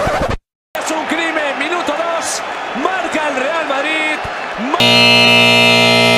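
An excited football broadcast commentator's voice for about four seconds, then near the end a loud, steady, held electronic tone made of many pitches at once, lasting about a second and a half.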